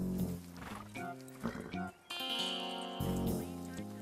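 Background music score: sustained instrumental chords that change every half second or so, with a high note held through the second half.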